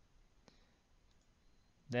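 A single computer mouse click about half a second in, with a fainter tick later, against quiet room tone.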